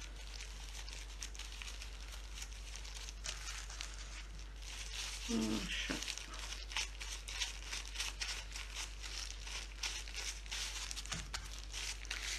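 Thin disposable plastic gloves crinkling and crackling in many small irregular clicks as gloved hands knead and fold a lump of marshmallow fondant.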